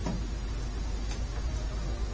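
Steady low hum with an even hiss, and a short click right at the start.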